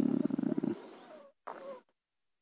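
A drawn-out hesitant "euh" from a man's voice, going rough and creaky as it trails off under a second in, followed by a brief faint sound and dead silence.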